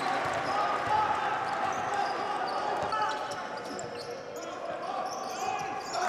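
Basketball game sound on an indoor court: the ball bouncing on the hardwood floor, with a steady murmur of voices in a large hall.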